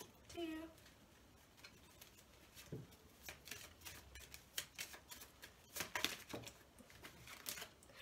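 Small deck of oracle cards being shuffled and handled by hand: faint, irregular clicks and flicks of card edges.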